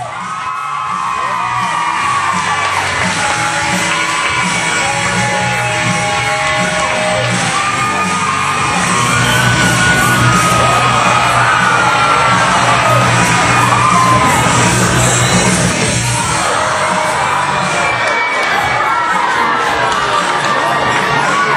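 Music with a steady low beat plays over an audience yelling, whooping and cheering in a large hall, fading in over the first couple of seconds.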